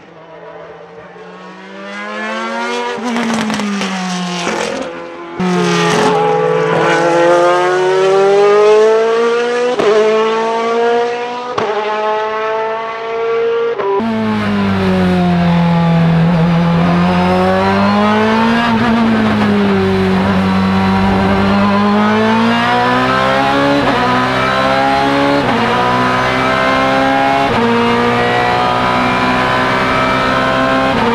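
Ferrari F430 GT race car's V8 engine at full throttle. It climbs in pitch and drops at each quick upshift, first heard from trackside and then, about halfway through, from inside the cockpit, where it is louder and fuller. In the cockpit the note falls and rises again through a corner, then climbs through several more upshifts.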